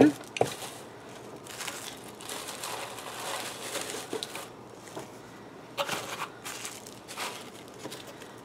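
Shredded paper filler in a cardboard box rustling and crinkling as items are pushed back into it by hand, with a light knock about half a second in.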